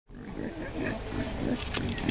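Wild boar grunting in low, uneven calls, with sharp clicks joining in near the end.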